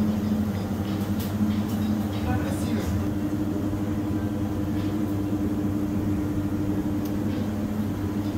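Steady machine hum with several held low tones, from the refrigeration and air-handling equipment that keeps an ice room at about minus 15 degrees. A few faint clicks and a brief murmur of voice come near the start.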